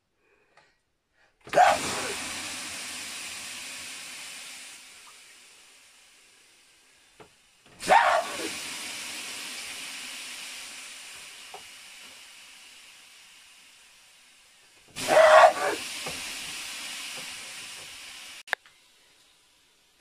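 Water thrown three times, about seven seconds apart, onto the hot stones of an electric sauna heater: each throw is a sudden splash and sizzle, then a hiss of steam that fades away over about five seconds.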